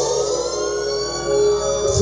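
A siren-like sweep effect in a DJ remix, a tone rising and then falling back, over a steady held bass note, played loud through a stacked mobile-disco loudspeaker system.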